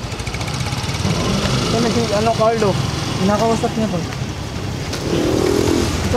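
Motor scooter engine running at low revs, a steady low rumble, with a person's voice sounding over it twice.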